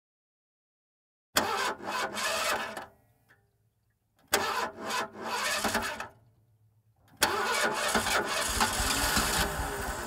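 Car engine being cranked by its starter: two tries of under two seconds each die away without catching, and a third try about seven seconds in catches and keeps running.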